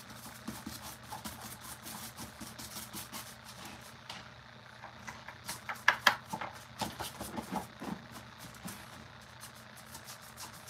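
Workbench handling noises: small clicks and taps from paint brushes and bottles, with a cluster of louder knocks about six seconds in as the paper mache pumpkin prop is picked up and moved. A steady low hum runs underneath.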